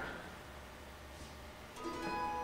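A brief hush of room tone, then about two seconds in an acoustic string band comes in with its first ringing chord, its notes held steady.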